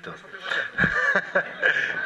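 Men talking over each other with chuckling.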